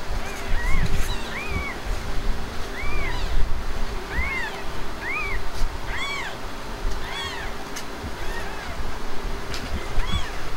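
Newborn kittens mewing over and over, short high-pitched cries that rise and fall, about one a second, over low rumbling noise.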